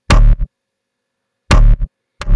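Sub-bass synth notes from the Serum preset 'Sub Actual', played as short stabs with a sharp attack and a deep, buzzy low end. Two short hits come right at the start and two more about a second and a half in, with a gap between.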